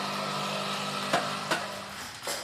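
Electric fruit mill for pome fruit running with a steady hum. Two short knocks come a little past the middle, and the hum fades near the end.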